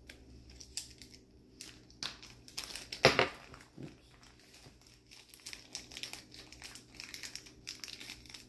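Small clear plastic bag crinkling as fingers handle and open it, with a sharper crackle about three seconds in.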